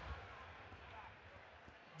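Near silence: faint room tone with a slight low rumble.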